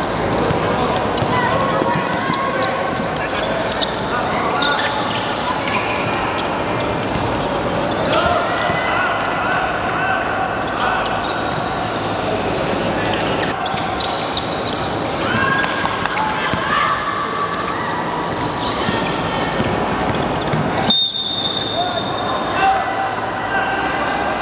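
A basketball dribbled and bouncing on a hardwood gym court during play, with people's voices calling out across the court throughout.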